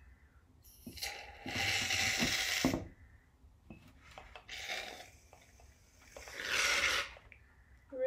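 Aerosol can of shaving cream spraying foam into a glass jar in spurts: a long hiss about a second in, a shorter, weaker one midway, and another strong one near the end.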